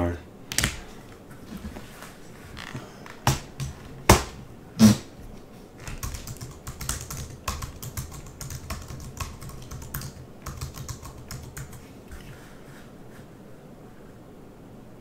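A few sharp clicks and knocks in the first five seconds, then a run of quick taps for about six seconds: typing on a computer keyboard.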